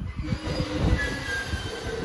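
JR East E231 series 500 electric commuter train slowing to a stop at the platform, its braking giving a steady high-pitched squeal with lower tones beneath, over the rumble of the wheels on the rails. The squeal sets in about a quarter second in.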